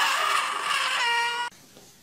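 Baby crying: a long, high wail, then a shorter cry at a lower pitch that cuts off suddenly about a second and a half in.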